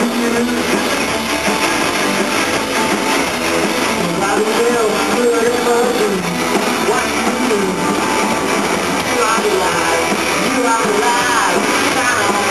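Rock band playing live, with electric guitars, bass guitar and drums.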